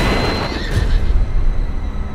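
Film-trailer sound mix: a deep, steady low rumble under music, with a noisy rush that fades away in the first half second.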